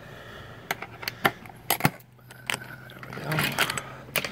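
Keys jangling and a series of sharp metallic clicks as a key works a camper door's knob lock and the door is opened.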